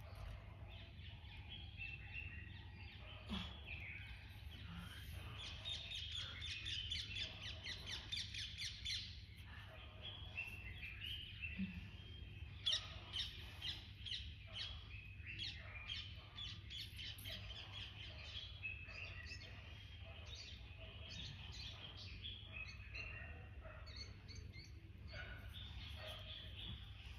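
Wild birds chirping and singing, several at once, in a busy run of quick high calls that is thickest about six to nine seconds in and again around twelve to fourteen seconds, over a faint steady low hum.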